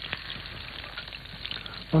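Small pieces of sausage frying in a hot pan: a steady sizzle with tiny crackles.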